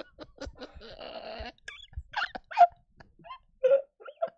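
A man laughing hard into a close microphone: irregular short bursts of laughter with a longer breathy stretch about a second in.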